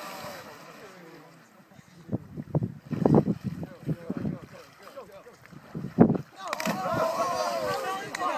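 Young people's voices calling and shouting in the open, with wind rumbling on the microphone; about six seconds in a sharp thump, then a long yell that falls in pitch.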